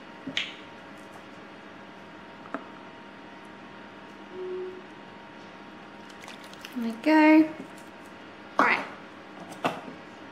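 Quiet kitchen room tone with a few light clicks and knocks of things being handled on the counter, and a brief hummed voice about seven seconds in.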